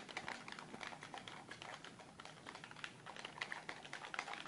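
Faint, irregular clicking of handheld game controller buttons and sticks pressed quickly during play, several clicks a second.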